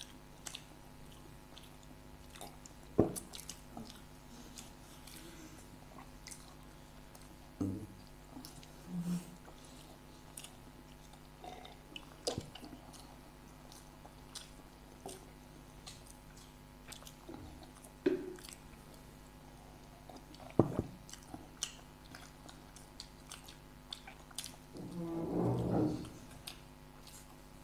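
Two people chewing mouthfuls of samosa, with soft mouth and pastry sounds and a few sharp clicks scattered through, over a faint steady hum.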